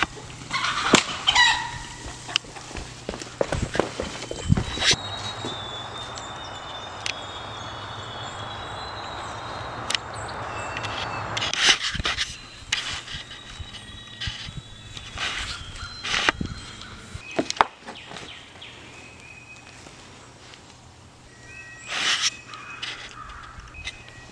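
Water spraying from a hose nozzle for several seconds, a steady hiss, amid chickens and other birds calling, with a few sharp clicks.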